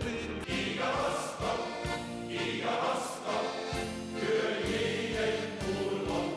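Male choir singing together, accompanied by accordions and guitar.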